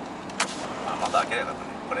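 Steady road and engine noise inside the cabin of a moving Suzuki Every kei van, with one sharp click about half a second in.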